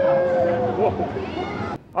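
Spectators yelling and cheering, one voice holding a long, slightly falling yell over the others. The sound cuts off suddenly near the end.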